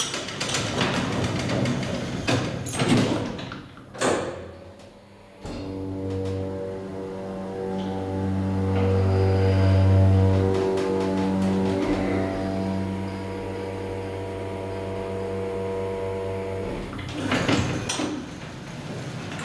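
KONE hydraulic elevator's sliding doors running closed with knocks and rattles, then the hydraulic power unit's motor and pump humming steadily, louder for a few seconds in the middle, while the car travels. The hum stops near the end and the doors slide open again.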